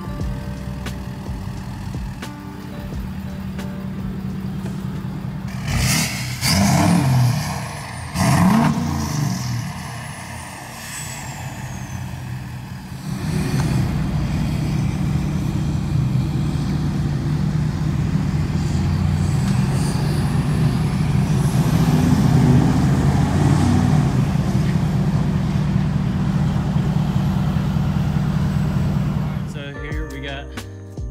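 Lifted 2020 Ford Super Duty pickup's engine idling through its side-exit exhaust, then revved sharply twice about six and eight seconds in. From about thirteen seconds in it pulls away under steady, louder power, and the sound cuts off just before the end.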